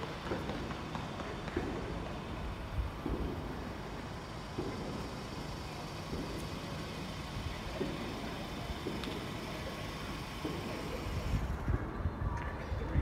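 Steady low rumble of outdoor street noise, with faint soft knocks every second or so.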